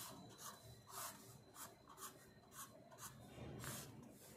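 Faint scratching of a pen on paper as lines are ruled around a table, in short strokes about twice a second.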